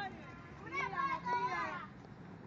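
Raised, high voices of several young people talking on the street, starting about half a second in and dying down near the end.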